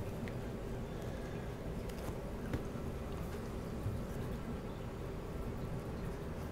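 Steady low hum of room tone with a few faint, short clicks of small handling noise.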